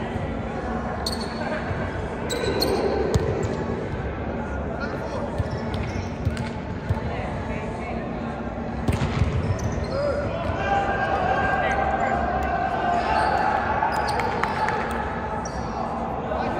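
A volleyball being struck and bouncing on a hardwood gym floor: several sharp knocks, the heaviest thud about nine seconds in. Players' voices echo in the large hall.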